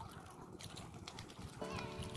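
Many calls and clicking chatter from a crowded roost of waterbirds. Near the end a steady held note comes in over them.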